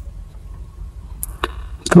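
Low steady background rumble with a few faint, short clicks about a second and a half in. A man starts to speak right at the end.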